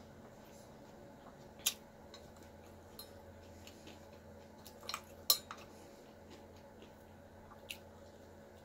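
A few sharp, light clinks of tableware, a cluster of them about five seconds in as cucumber slices are picked out of a stainless-steel bowl, over a faint steady hum.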